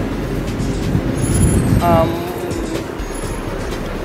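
Road traffic: a low rumble of a motor vehicle passing close by, loudest in the first two seconds and then easing off.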